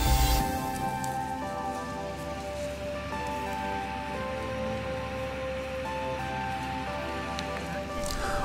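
Soft background music of slow, held notes that change every second or so. A low rumble underneath cuts out about half a second in.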